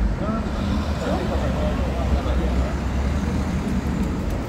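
Street noise: a steady low rumble with indistinct voices of people talking.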